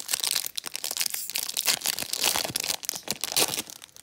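A foil trading-card pack wrapper being torn open and crinkled in the hands, a dense run of crackling.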